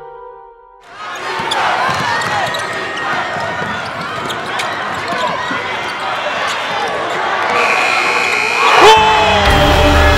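Live gym sound of a basketball game: a ball bouncing, sneakers squeaking on the hardwood floor, and players and crowd shouting. It cuts in after a short silence, and music comes back in near the end.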